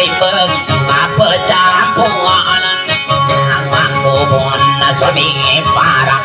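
Amplified long-necked plucked string instrument playing a wavering dayunday melody over a steady low drone.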